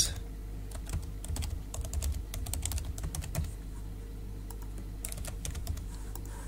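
Computer keyboard typing: runs of quick key clicks, mostly in the first three and a half seconds and a few more about five seconds in, over a steady low hum.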